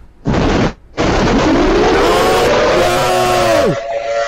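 Loud, harsh noise played down a phone line by a prank caller. A short burst comes first, then from about a second in a continuous distorted din with a pitched tone that slides up, holds and drops away near the end.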